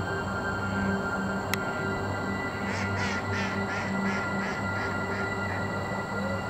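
Background music with steady held tones throughout. About halfway in, a duck quacks a quick run of about ten quacks that grow fainter.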